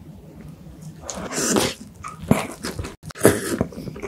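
Close-miked bite into and chewing of a soft cream-filled crepe cake. Two loud, wet, noisy bites or slurps come about a second in and again near three seconds, with a sharp wet mouth click between them.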